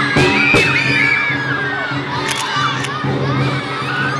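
A group of young children shouting excitedly in high voices, loudest in the first second or two, over steady music underneath.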